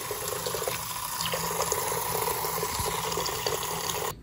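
Bathroom sink tap running steadily, the stream splashing over a paint-smeared palette held under it to rinse off old paint.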